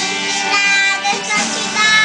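A young boy singing a gospel song over instrumental accompaniment.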